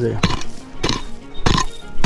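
A short-handled pick chopping into dry, hard-packed dirt: four sharp blows in quick succession, a little under two a second.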